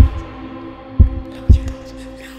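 Punk-and-roll song in a sparse instrumental break: three heavy kick-drum beats in an uneven rhythm, under sustained guitar notes.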